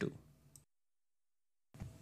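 Dead silence between two phrases of a man's narration, with the end of a spoken word at the start and a faint click about half a second in.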